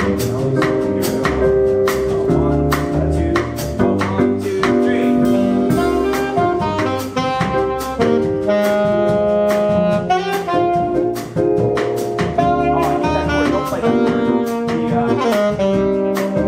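Small jazz combo playing a bossa nova vamp in C minor, cycling C minor, D half-diminished and G7. Piano, upright bass and drum kit keep a steady groove while saxophone plays over it.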